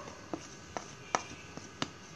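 A spoon tapping lightly on a bowl four times while spice powder is tipped into a mixing bowl: short, sharp clicks.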